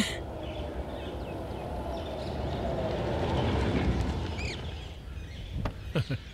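A small car's engine rumbling as it drives up, swelling and then fading as it draws to a stop, with a few bird chirps about four and a half seconds in and a couple of clicks near the end.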